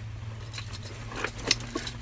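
A few light, sharp clicks and jingles, spread unevenly through the moment, over a steady low hum inside a car.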